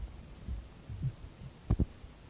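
Sparse, soft low drum strokes about half a second apart, some bending upward in pitch, then a sharper double stroke near the end, like a drummer tapping before a song.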